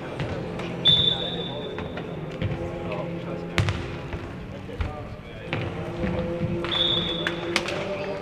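Futnet ball being kicked and bouncing on an indoor sports-hall court, a few sharp impacts, while a referee's whistle sounds twice: a long blast about a second in and a shorter one near the end.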